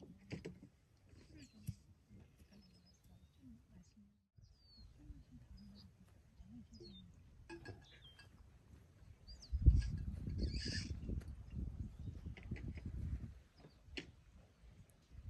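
Small birds chirping in short, thin calls, over faint distant voices. About ten seconds in, a loud low rumble starts suddenly and lasts about four seconds before dying away.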